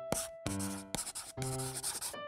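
Crayon scribbling on paper in several quick, scratchy strokes, over light background music with held notes.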